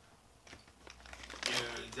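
Light rustling and scattered small clicks of things being handled on a desk, starting about half a second in, before a man's voice begins near the end.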